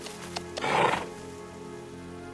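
Film music with steady held notes, and a short, loud horse neigh a little over half a second in.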